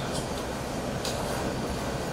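A pause between a man's sentences: steady background room noise with a low hum and hiss, picked up through the open microphone, with a couple of faint ticks.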